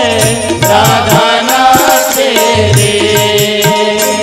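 Devotional bhajan music: a singing voice over a steady drum beat and regular rhythmic percussion.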